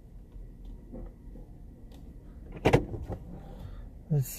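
Low steady rumble of a car moving slowly, heard from inside the cabin, with one sharp loud knock about two and a half seconds in and a few faint ticks after it.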